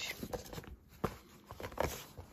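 Pre-cut foam-board craft sheets being lifted and handled in a cardboard box, with a few short taps and scrapes.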